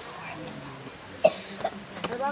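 A person coughing twice in quick succession, the first cough loud and sharp, over faint voices.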